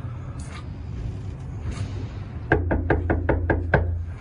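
Knuckles knocking on a front door: a quick run of about eight raps starting about two and a half seconds in and lasting just over a second.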